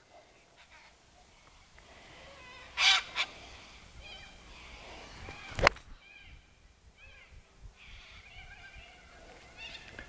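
An iron strikes a golf ball cleanly off bare, hard-packed ground, a single sharp crack a little past halfway. The pro calls the shot perfect. Birds call around it, with a loud squawk about three seconds in.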